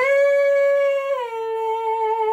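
A woman's singing voice holding one long note, stepping down to a lower note a little over a second in and holding it with vibrato.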